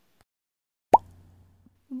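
A single short cartoon 'pop' sound effect about a second in: a quick upward-sweeping blip with a faint low hum trailing after it. It marks a picture popping onto the screen.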